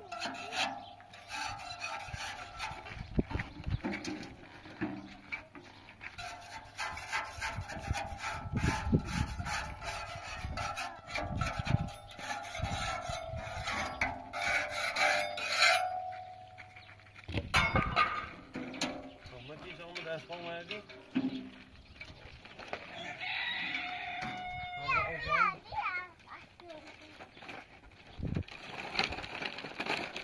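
A hand tool scraping and rasping against the inside of a metal wheelbarrow tray in a quick run of strokes that stops about halfway through, followed by a single knock.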